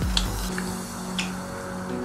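Soft background music with held notes, and a couple of faint clicks of chewing.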